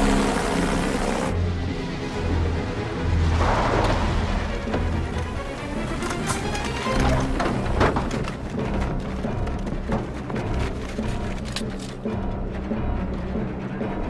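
Orchestral action film score with low drum pulses, a swell a few seconds in and sharp percussive hits in the second half. A rush of noise under the first second cuts off abruptly.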